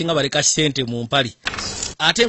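A person's voice speaking, then a short hiss near the end.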